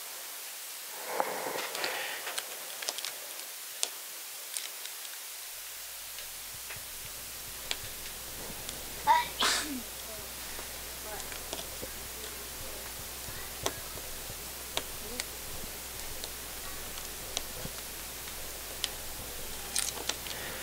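Quiet room tone: a steady hiss with scattered small clicks. A low hum comes in about five and a half seconds in. A brief breathy vocal sound is heard near the start and again about nine seconds in.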